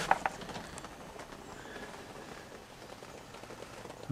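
Quiet room tone: a faint steady hiss, with a few small clicks just at the start.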